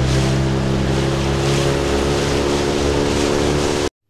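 Dinghy outboard motor running steadily under way, with water rushing past the hull and wind on the microphone. The sound cuts off abruptly just before the end.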